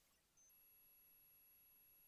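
Near silence: only faint hiss and a few thin, steady high tones.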